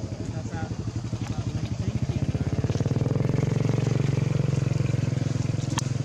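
A small engine running close by, with rapid even pulses, growing louder over the first two to three seconds and then holding steady.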